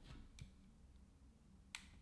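Near silence with a few faint handling clicks, then a sharper single click near the end as the Boling P1 pocket LED video light's power switch is pressed to switch it back on.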